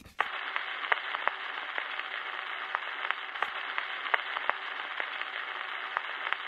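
Steady radio-static hiss with scattered irregular crackles and clicks, starting abruptly just after the start: a glitch-style static sound effect.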